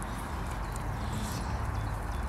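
Steady low rumble and hiss of outdoor background noise by a pond, with a few faint high ticks.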